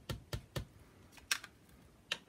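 A small ink pad dabbed repeatedly onto a rubber stamp mounted on a clear acrylic block, inking it: quick light taps about four a second, then a single sharper click a little over a second in.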